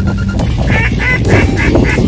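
A duck call blown in a run of about five quick, evenly spaced quacks in the second half, the usual signal before a mark is thrown, over electronic background music with a steady beat.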